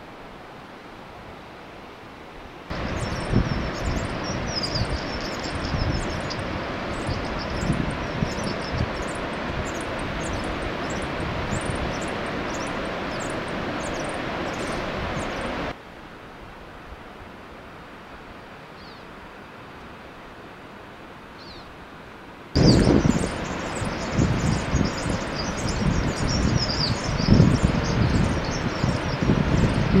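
Outdoor ambience of wind rumbling on the microphone, with short high chirps over it. It switches abruptly between a low hiss and the louder wind and chirping: louder from about three seconds in until about sixteen, quiet again, then loud once more from about twenty-two seconds on.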